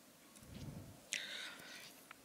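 Faint breath and mouth noise close to a lectern microphone: a low murmur about half a second in, then a short breathy hiss about a second in.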